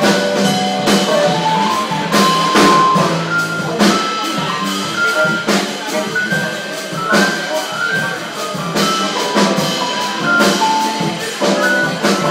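Live jazz combo playing, a single held melodic line stepping between notes over a drum kit with frequent drum and cymbal hits.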